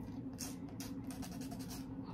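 A run of short, light scratching sounds from fingers handling a clear plastic press-on nail tip, over a faint steady hum.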